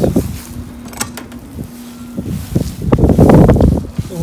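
Wind buffeting a phone's microphone, with a loud rumbling gust near the end, over a faint steady hum. A single sharp click comes about a second in.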